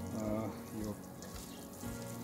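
Water sprinkling from a metal watering can's rose onto loose potting mix, a steady soft hiss and patter, with faint music and a brief murmured voice underneath.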